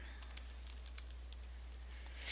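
Light typing on a computer keyboard: a quick run of faint keystroke clicks over a low steady hum.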